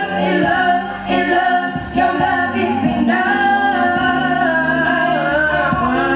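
A song performed live: a singer holding long, wavering notes over backing music with a bass line.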